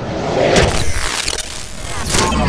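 Animated-intro rocket-launch sound effect: a loud rush of noise over a low rumble that builds over the first half second, with a sharp whoosh burst right at the end as the launch peaks.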